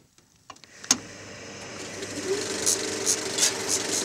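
Film projector switched on with a click about a second in, then its motor and film mechanism running up to speed: a steady hum with a fast mechanical clatter that grows louder.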